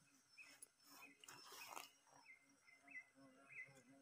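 Near silence: faint forest background with short, high chirps repeating every half second or so, from a small animal.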